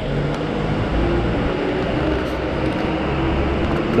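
Airport passenger minibus's engine running as it drives off, with a steady low drone and traffic noise.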